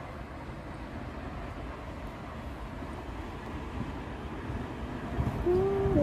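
Steady low rumbling noise, with a person's voice making a short drawn-out sound near the end.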